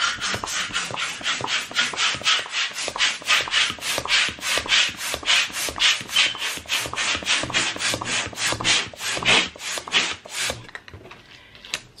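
Handheld balloon pump being worked rapidly, each stroke a short airy rasp, about three to four a second, as it inflates a latex balloon; the strokes stop shortly before the end.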